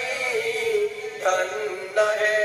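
A man singing a song in Bengali, holding a long note that slides down a little, then moving on to a new note a little past the middle.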